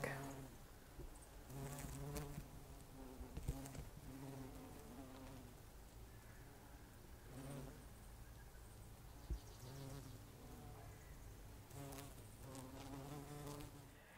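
Bumblebees buzzing as they fly among flowers: a faint low hum that comes and goes in spells of about a second.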